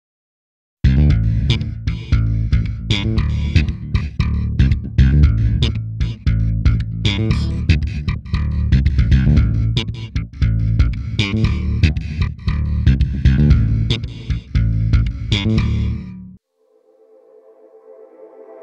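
Funky electric bass line played through a gated plate reverb plugin: a quick run of sharp plucked notes with a heavy low end. It starts about a second in and cuts off abruptly near the end.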